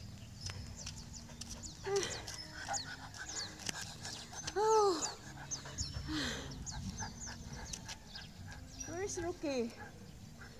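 A leashed dog making short whining cries that rise and fall in pitch, a few seconds apart, with a woman's wordless voice among them.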